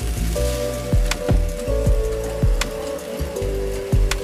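Suzutec soil-filling machine running as rice seedling trays pass under its hopper: a steady granular hiss of soil pouring, with a sharp knock about every half second. Music with held notes plays underneath.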